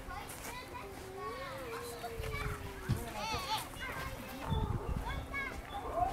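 Children playing in the background, with scattered calls and shouts of children's voices.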